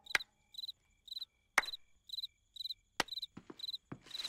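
Cartoon cricket-chirp sound effect, short high chirps about twice a second, used as the gag for an awkward silence. A few sharp clicks sound among the chirps.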